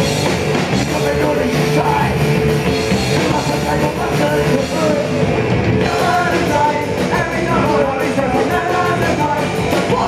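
Live punk rock band playing loud and steady: distorted electric guitar, bass guitar and drums, with singing over it in the second half.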